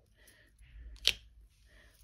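Faint handling rustle, then a single short sharp click about a second in as a stamp mounted on a clear acrylic block is lifted off the card tag.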